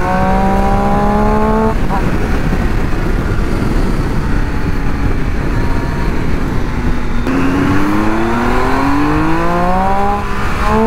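Triumph Street Triple's three-cylinder engine on its stock exhaust, rising in pitch as it pulls. It drops away about two seconds in, then runs steadier under wind rush before climbing through the revs again over the last few seconds.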